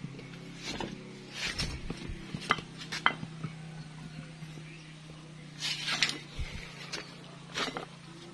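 Small metal engine parts clinking and knocking as they are handled: the oil-pump drive sprocket and chain being picked up and set onto a scooter crankcase, with a few sharp clinks scattered through. A steady low hum runs beneath.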